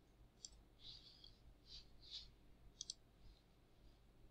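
Faint computer mouse clicks, about half a dozen in the first three seconds, over near silence.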